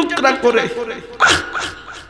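A man weeping into a microphone: a held, wavering voiced tone breaks into two sharp sobbing cries a little past the middle, then trails off.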